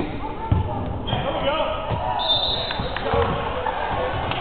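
Basketball bouncing on a hardwood gym floor in a string of low thumps, with players and spectators calling out across the gym.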